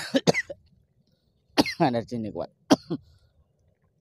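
A person coughing hard: a quick run of sharp coughs at the start and another near the end, with a short strained word between.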